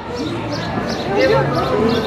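Overlapping chatter from passers-by, with no single clear speaker.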